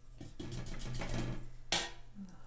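Paper rustling as a sketchbook page is handled, with one sharp crackle of paper near the end.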